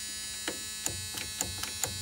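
Steady electric buzz with a few faint clicks as the skid steer's ignition key is turned; the engine does not catch.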